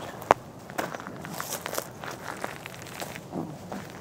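Footsteps crunching on gravel and dry weeds: scattered short crackles, with one sharp click about a third of a second in.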